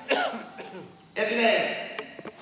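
A man's voice through a microphone: two short vocal sounds about a second apart, the first starting sharply.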